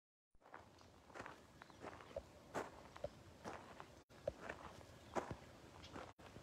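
Faint footsteps of someone walking on a sandy, pebbly lakeshore, a step about every two-thirds of a second, with a brief break about four seconds in.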